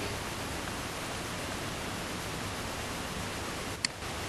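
Steady hiss of recording background noise, with a single short click near the end from a computer mouse button.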